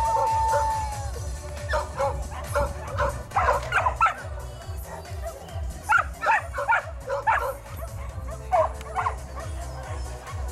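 Shetland sheepdog barking in quick runs of short, sharp barks, starting about two seconds in and coming again in bursts later, as it runs an agility course.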